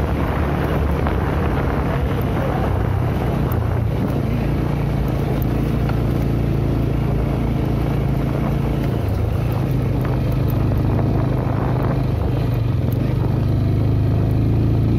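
Motorcycle engine running steadily while riding over a rough dirt track, with wind buffeting the microphone.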